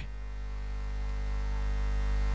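Steady electrical mains hum with a buzz of evenly spaced overtones on the audio feed, slowly growing louder.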